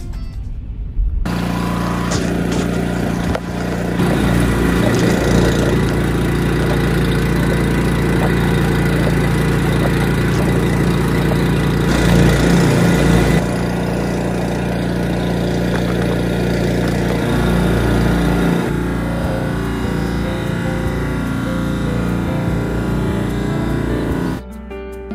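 Snowblower engine running steadily while it throws snow, starting suddenly about a second in and growing louder about four seconds in.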